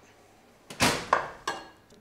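A thump, then two sharper knocks, as a metal roasting tray of vegetables is set down and shifted on a wooden chopping board.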